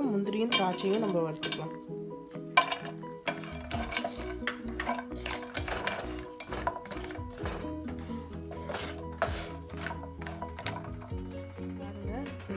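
Wooden spatula stirring and scraping cashews and raisins frying in ghee in a pan: a busy run of scrapes and knocks against the pan, over background music.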